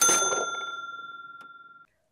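A single bell-like ding sound effect, struck once and ringing out with a clear tone that fades away over nearly two seconds.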